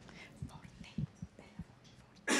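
Faint whispering in a quiet room, with a few soft low thuds.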